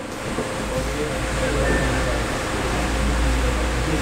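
Steady room noise, an even hiss with a low rumble, under faint, indistinct speech too quiet to make out. The student's handheld microphone is not working, so his answer barely registers.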